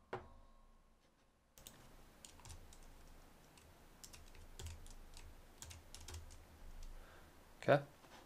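Typing on a computer keyboard: faint, irregular key clicks starting about a second and a half in, as a verification code is keyed in.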